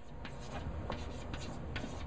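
Chalk scratching and tapping on a blackboard as a word is written, heard as a string of short, light scratches and ticks.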